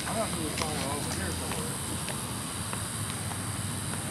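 Quiet outdoor background with a steady low hum and hiss. Faint voices come in the first second or so, and a few soft taps follow.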